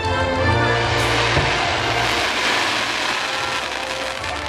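The fireworks show's music soundtrack playing loud over the park's loudspeakers, with sustained bass notes. A dense hissing wash swells through it from about one to three seconds in.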